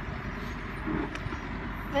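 Wheel loader's diesel engine running steadily.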